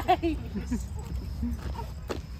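A toddler squealing and laughing. A loud burst of high, wavering cries comes right at the start, followed by a few shorter, softer sounds.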